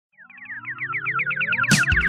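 Synthesizer intro of a disco polo dance track: a rapid run of short, falling synth chirps, about eight a second, fading in and growing louder over rising synth sweeps. The drum beat comes in near the end.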